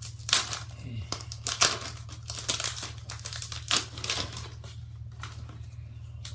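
Foil wrapper of a Pokémon booster pack crinkling and tearing as it is opened by hand, a run of sharp crackles lasting about four seconds, over a steady low hum.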